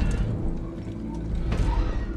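A steady low drone from the film's soundtrack, with a few faint mechanical clicks and knocks over it.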